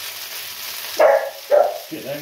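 A dog barks twice in quick succession, about a second in, over sausages and onions sizzling in a frying pan.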